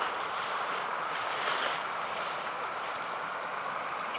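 Steady rush of creek water spilling over a low rocky ledge.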